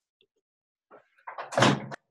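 Near silence for about a second, then a short thud and rustle of a person settling into a desk chair, overlapped by a single spoken "So".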